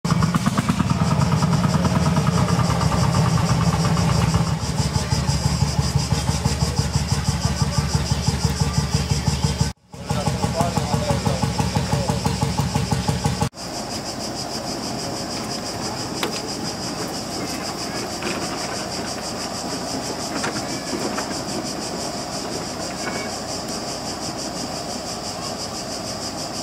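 A big engine running loud with a fast, even beat, cut off abruptly for a moment just before ten seconds in and then for good about thirteen seconds in. After that there is a steadier, quieter background of outdoor noise.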